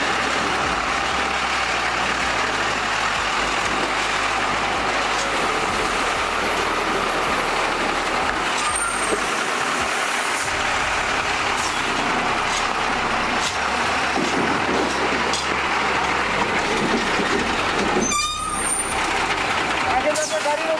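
Military trucks driving slowly past, a steady mix of engine and road noise that changes briefly near the end.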